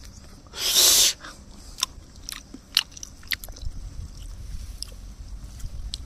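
A person eating rice and chicken by hand: a loud, short slurp as a handful goes into the mouth, then open-mouthed chewing with wet clicks and lip smacks every half second or so.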